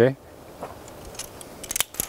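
Metal carabiners clicking as they are handled: a few light clicks, the sharpest near the end.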